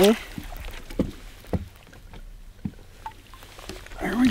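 A few scattered, dull knocks against a fishing boat's hull as a northern pike is landed by hand over the side, with the boat otherwise quiet.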